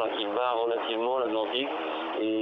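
A man speaking French over a narrow, telephone-like link, his voice thin and cut off at the top.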